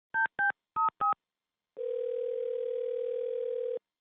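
Telephone touch-tone dialing: four quick keypress beeps, each a pair of tones, then one steady tone lasting about two seconds, the ringback of the call going through.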